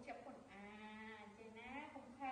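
A woman's voice in a long drawn-out, sing-song tone, held steady for about a second and then bending up in pitch near the end.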